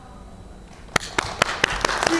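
Audience starting to applaud: after a lull, scattered single hand claps begin about a second in and come more and more often.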